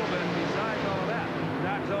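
Two top fuel dragsters' supercharged nitromethane V8s running at full throttle side by side down the strip, a steady, dense noise, with a man's voice over it.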